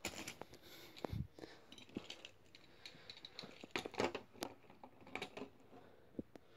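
Faint, scattered clicks and light taps of hands handling small toy monster trucks and the camera, with a soft low thud about a second in.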